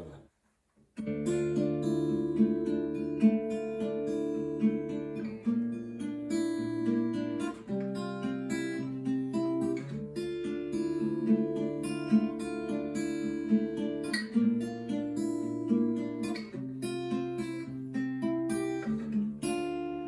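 Cort steel-string acoustic guitar fingerpicked, starting about a second in: pairs of bass strings plucked together, then the upper strings picked in turn, running through the verse's chord sequence with a barre chord.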